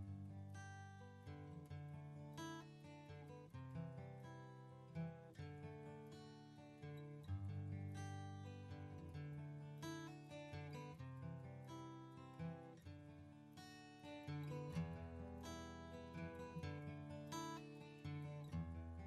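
Quiet background music of acoustic guitar, a steady run of plucked notes and chords that starts abruptly at the very beginning.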